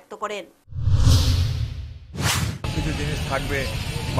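A loud whooshing rush of noise with a heavy low rumble starts under a second in. A short, sharp whoosh follows a little after two seconds, then a steady low rumble with faint voices behind it.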